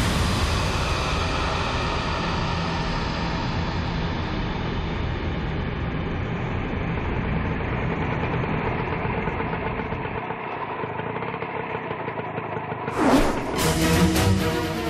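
A steady engine-like rumble runs on evenly, followed near the end by a short whoosh.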